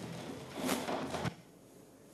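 A faint person's voice off the microphone, then near silence from a little past halfway through.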